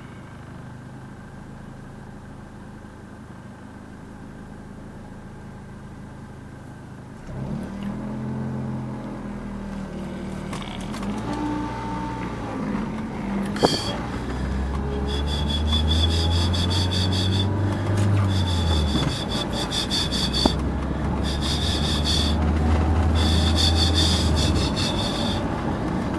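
Car heard from inside the cabin: engine idling low and steady, then about seven seconds in the car pulls away and engine and road noise rise as it gathers speed. In the second half a rasping rub repeats at regular intervals over the drive.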